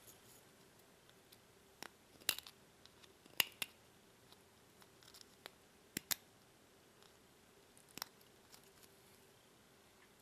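A handheld deburring tool scraping the edge of a laser-cut aluminum panel to take off leftover slag and burr, heard as a handful of short, separate scrapes and clicks, faint between strokes.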